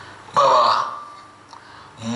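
A man's short, loud, throaty vocal sound starting suddenly about a third of a second in and fading away over about half a second.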